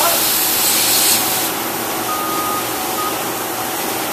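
Compressed-air blow-off hissing as excess oil is blown off a machined part. It cuts off about a second and a half in, leaving the steady run of the mist collector and cell machinery, with a few short faint beeps.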